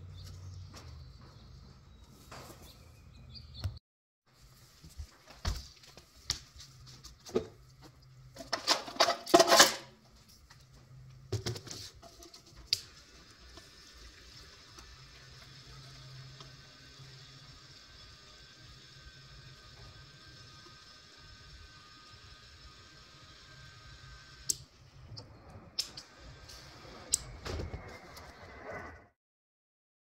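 Gasoline running through a hose from a plastic gas can into the fuel tank of a Predator 212cc engine: a steady hiss and trickle lasting about twelve seconds. Before it come scattered clicks and knocks of the can, hose and caps being handled, and after it a shorter stretch of flow with more knocks.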